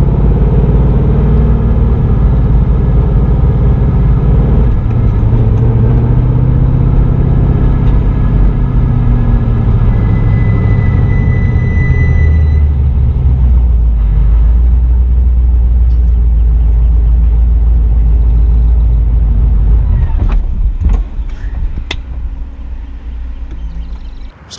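The LS1 V8 in a BMW E36 runs loud at low revs, heard from inside the cabin. Its pitch settles lower about halfway through, and a thin high tone sounds for about two seconds. A few seconds before the end the engine cuts out as it stalls, leaving a few clicks.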